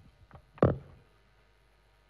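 Handling knocks picked up by a lectern microphone: a couple of faint taps, then one sharp knock a little over half a second in.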